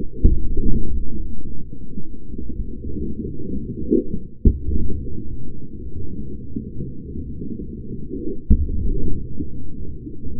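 Slowed-down, deep and muffled rumble of a car tyre crushing small drink cartons, with three low thuds as the cartons burst: one just after the start, one midway and one near the end.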